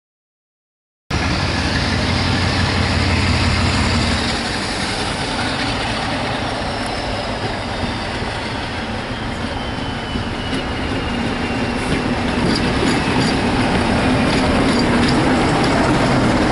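Full-size diesel locomotive hauling a train of coaches past at close range, its engine running with a deep, steady note. The sound cuts in about a second in, and the wheels click over rail joints near the end.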